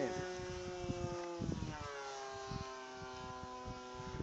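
Radio-controlled P-51 Mustang model airplane's motor droning steadily overhead on its landing approach, its pitch easing a little lower about halfway through.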